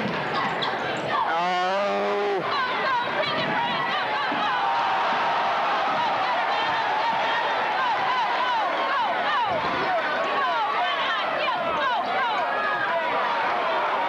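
Gymnasium crowd at a high school basketball game, many spectators shouting and cheering over one another without a break. About a second in, one voice holds a long, wavering shout for about a second, and a basketball is dribbled on the hardwood court.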